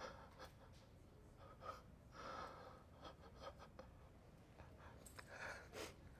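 A person crying softly: faint gasping, breathy sobs that come in short bursts, with a louder run near the end.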